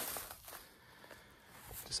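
Faint footsteps crunching on a rocky gravel track.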